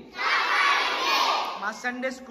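A group of children praying aloud together, many voices at once in a loud jumble, with a single voice standing out near the end.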